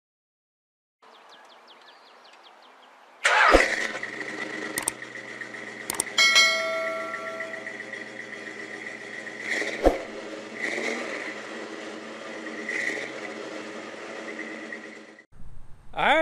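Dodge Super Bee's V8 engine starting with a sudden burst about three seconds in, then running steadily. A few sharp clicks and a short ringing tone from the subscribe animation come over it.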